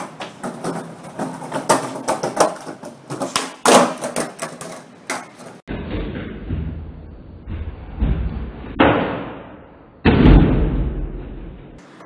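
Skateboard on a ceramic tile floor: a quick run of sharp clacks and knocks as the tail pops and the board clatters and lands on the tiles, then a duller, lower rumbling stretch broken by two louder thuds near the end.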